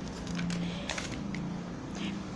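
Glossy catalogue pages being turned by hand: a few short papery rustles and flicks.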